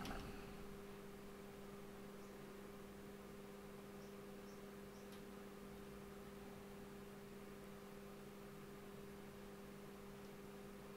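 Near silence: room tone with a faint steady electrical hum and a few faint clicks about halfway through.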